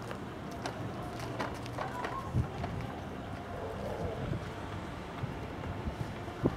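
Distant aerial firework shells bursting: scattered sharp bangs and pops, several in the first couple of seconds and a deeper thump a little before the middle, over a steady background rumble with wind on the microphone.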